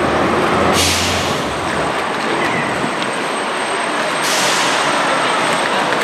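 Busy traffic and crowd noise at a curbside pickup lane, with a loud hiss that starts suddenly a little under a second in, and another from about four seconds in that runs on past six seconds.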